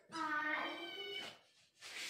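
Kitten meowing once, a call of about a second that rises slightly in pitch, followed near the end by a short hissy noise.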